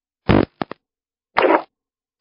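Brief telephone-line noises on a call-in radio broadcast as one call ends and the next connects: a short low burst, two quick clicks, then another short burst, with dead silence between them.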